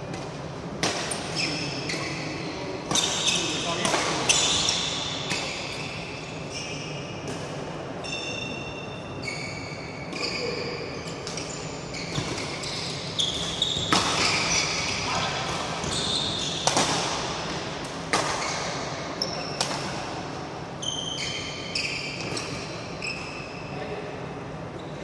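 Badminton doubles rally in a large hall: sharp racket strikes on the shuttlecock, echoing, with short high squeaks of shoes on the court mat between shots.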